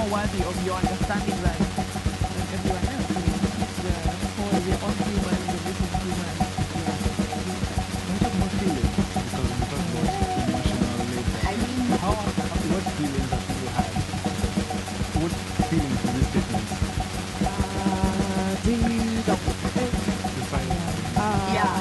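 Live electronic music from a Moog synthesizer: a steady low drone under a fast, dense pulsing beat, with wavering tones sliding up and down above it.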